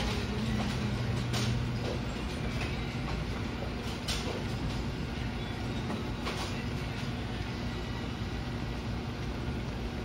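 AMF A-2 bowling pinsetter cycling and setting a fresh rack of pins, a steady, quiet mechanical hum with a few sharp clicks. Its low drone eases off about two seconds in.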